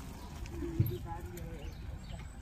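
Bicycle tyres rattling over cobblestones under a low, steady rumble, with one sharp thump a little under a second in. A person's voice talks over it in the background.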